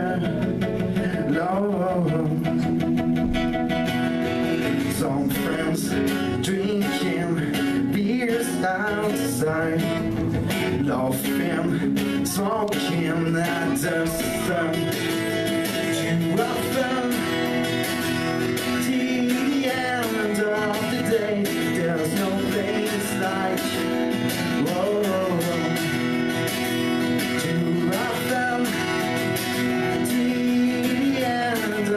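Acoustic guitar strummed steadily while a man sings into a microphone, a solo live folk song.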